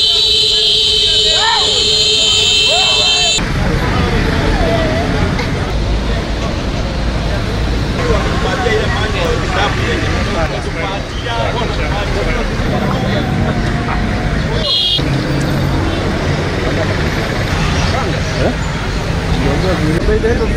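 Busy street sound: traffic running with many people talking in the background. A steady tone with a hiss sounds over it for the first three or four seconds, then stops.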